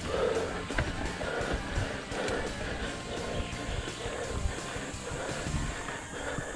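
Mountain bike riding a dirt trail: uneven rumble of wind and tyres on the camera microphone, under faint background music with a steady beat.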